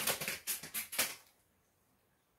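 Plastic wrapper of a Reese's Sticks candy bar crinkling in a quick run of crackles that stops a little over a second in.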